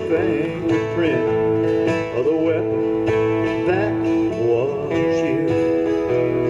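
Three acoustic guitars strummed together in a country-bluegrass song, with voices holding long notes in harmony over the strumming.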